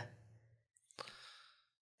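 Mostly near silence: a speaker's pause, with one short breath about a second in.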